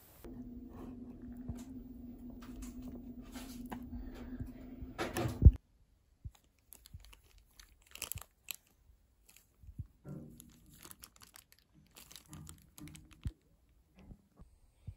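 A steady low hum for about five seconds, ending in one loud knock; then scattered crinkling and squishing of a plastic bag as hands knead a green mugwort paste inside it.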